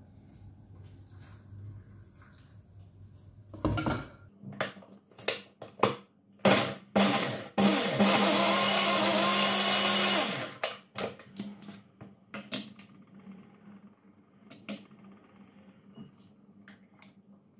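Electric mixer grinder with a steel jar grinding soaked Kashmiri red chillies with garlic and a little water. After a few quiet seconds it runs in several short pulses, then one steady run of about two seconds, then a few more short pulses.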